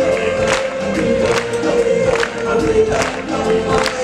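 Stage-show music with a choir singing over a steady beat, a little over two beats a second, and a long held note throughout.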